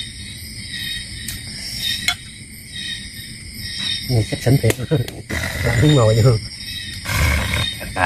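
Steady high chirring of night insects, with a sharp click about two seconds in and a man's low voice murmuring over it in the second half.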